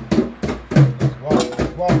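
Hand drum struck with bare hands in a steady rhythm, about four strokes a second, several strokes with a low ringing tone; a voice is briefly heard partway through.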